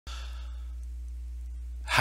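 Steady low electrical hum on the recording, with a faint breathy hiss in the first half-second or so. A voice begins right at the end.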